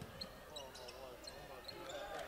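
Faint game sound of a basketball being dribbled on a gym floor, with faint voices in the background.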